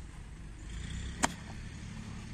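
Golf club striking a ball on grass: one sharp, loud click about a second in, over a low outdoor rumble.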